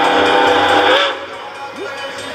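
Steam locomotive whistle blowing: a long blast with several steady tones over a hiss, which cuts off about a second in. The locomotive is Denver and Rio Grande Western K-27 2-8-2 No. 464.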